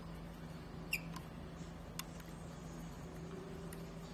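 A screwdriver turning the cable-clamp bolt of a mechanical disc-brake caliper as it is tightened: a short squeak with a click about a second in, then single sharp clicks near two seconds and near the end, over a steady low hum.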